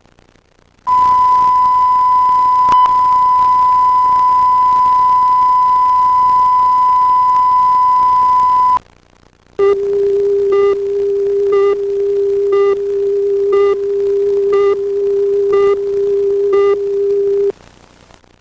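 Television tape line-up audio. A steady high test tone is held for about eight seconds, with a single click early in it. After a short gap comes a lower steady tone with a short beep about once a second, as on a countdown leader, which cuts off suddenly near the end.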